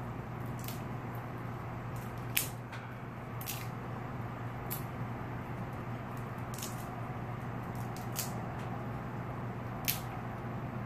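Fingers picking and peeling a plastic shrink seal off the cap of a small bottle: scattered sharp crinkles and snaps, loudest about two and a half seconds in and again near the end, over a steady low room hum.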